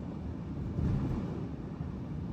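Steady road and engine rumble of a car driving at highway speed, heard inside the cabin, briefly louder about a second in.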